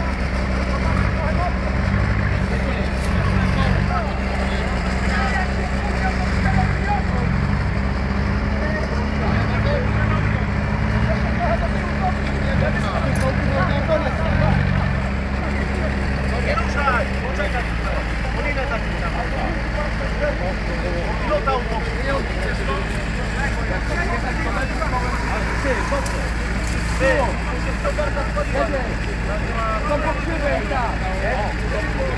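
Volvo BV 202 tracked carrier's engine running while the vehicle sits in swamp water and mud. A little past halfway its note changes and settles into a steadier, lower hum.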